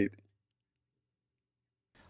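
A man's voice says the last of a word, "bite", which cuts off within a fraction of a second. The rest is dead digital silence.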